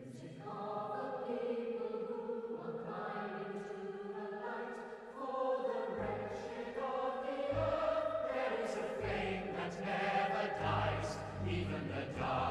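Choir singing a slow, swelling anthem with orchestra; deep drum beats come in about halfway.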